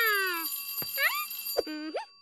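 High-pitched wordless cartoon character vocalisations with sliding pitch: a long falling call at the start, a short rising one about a second in, and a brief wavering one near the end.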